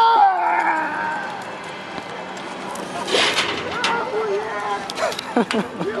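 A man's long yell as he leaps off a rope-jump platform, falling in pitch and fading over about a second and a half as he drops away. Scattered voices of people on the platform follow.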